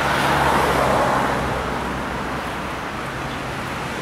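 Road traffic: a steady wash of car noise that swells over the first second or so as a vehicle passes, then eases off.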